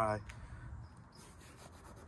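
A spoken word ends just after the start, then a faint, steady rubbing noise.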